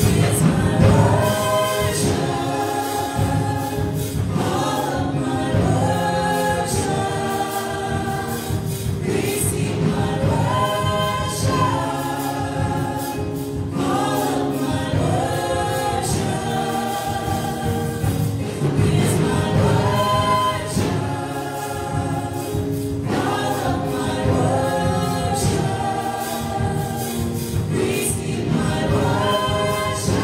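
Small group of women singing a slow gospel worship song in harmony, in long held phrases, over sustained electric keyboard chords.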